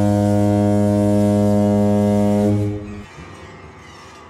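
Ship's horn sounding one long, low, steady blast that fades out about three seconds in.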